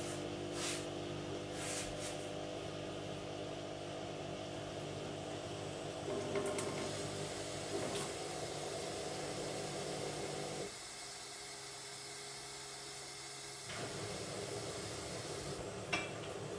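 Glassware clinking a few times as a drink of squash is made at a kitchen sink, over a steady hum with several pitches that cuts out for about three seconds near the end and then comes back.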